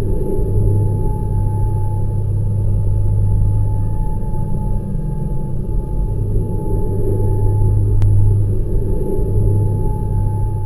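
Dark ambient horror drone: a loud low rumble that swells and eases, with a thin steady high tone held above it and one sharp click about eight seconds in.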